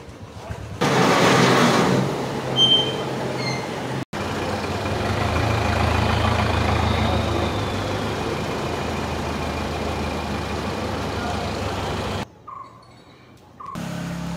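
A brief loud burst of noise early on. Then, after an abrupt cut, a truck-mounted borewell pump-lifting rig runs steadily with a low engine hum for several seconds, stopping abruptly near the end.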